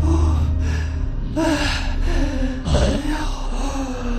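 A man's voice gasping and groaning in exhaustion, in several short breathy bursts with bending pitch.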